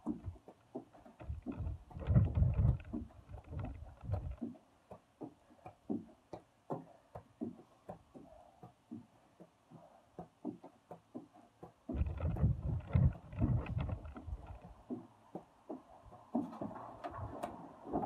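Low wind rumble on the microphone in two spells, about a second in and again about twelve seconds in, over scattered light knocks and taps from a person exercising on a wooden deck.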